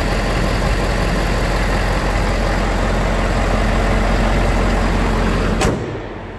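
Ford 6.7-litre Power Stroke turbo-diesel V8 idling steadily with the hood open, running smoothly. The sound cuts off suddenly near the end.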